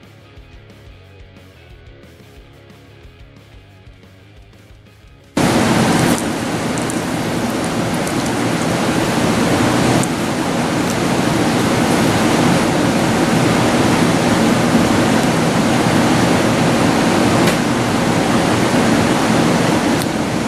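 Faint background music, then about five seconds in a loud, steady rushing noise cuts in suddenly and holds.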